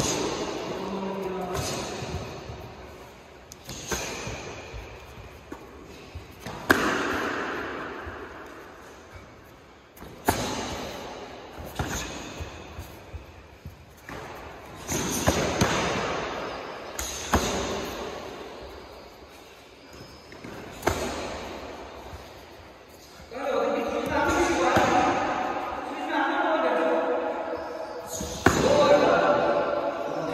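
Kicks and punches landing in bare-handed full-contact karate sparring: sharp slapping impacts every second or two, each echoing around a large hall. Voices come in near the end.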